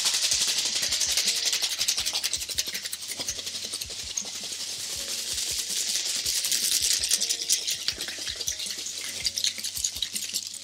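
Ice rattling fast and continuously in a stainless-steel cocktail shaker shaken hard: the wet shake of an egg-white gin sour after the dry shake.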